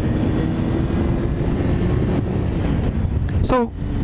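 Yamaha R1 sport bike's inline-four engine running under acceleration at road speed, its note climbing slowly and then dropping away about two seconds in, under heavy wind rush on the microphone.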